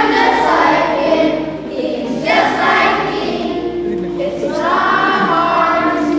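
A group of children singing together as a choir, in phrases that start about every two seconds.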